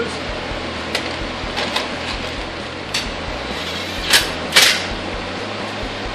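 Small hardware being handled by hand: scattered light clicks, then two sharper knocks about four seconds in, over a steady background rush.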